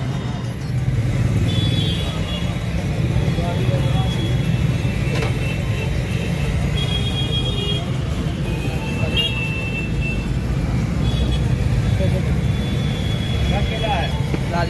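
Busy roadside street noise: a steady low traffic rumble with crowd voices, and short high-pitched tones sounding on and off every second or two.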